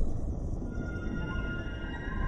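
Cinematic logo-intro music: a low rumble with steady, high synthesizer tones that come in under a second in and hold.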